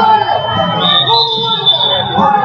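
Crowd chatter echoing in a gym, with a long, thin, steady high tone over it that steps up in pitch about a second in.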